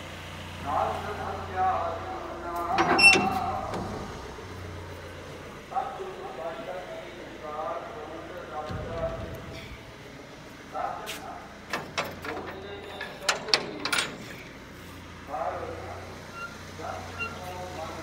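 A person talking on and off, with a few sharp metallic clanks and rattles from a metal-framed gate being handled, mostly in a cluster partway through.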